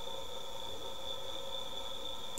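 A steady high-pitched electrical whine with fainter hum tones beneath it, holding unchanged.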